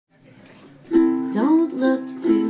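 A woman singing to her own ukulele, the strumming and voice coming in together about a second in after a faint lead-in.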